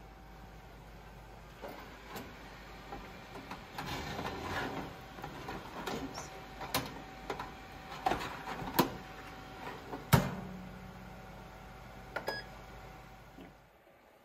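A wire air-fryer tray loaded with breaded chicken clinking and clanking as it is slid into a countertop air fryer oven: a run of sharp metal clicks, the loudest about ten seconds in as the door shuts, then a few short beeps from the oven's controls.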